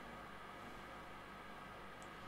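Faint steady hiss with a low hum: room tone, with no distinct event.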